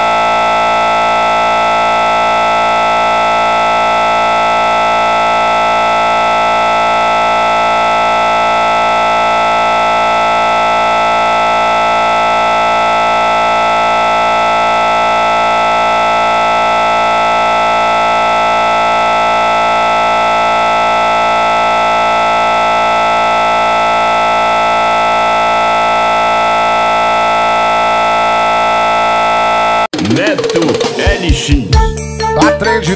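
A loud, perfectly steady electronic buzzing tone with many pitches held together, unchanging throughout. It cuts off abruptly at the very end as music starts.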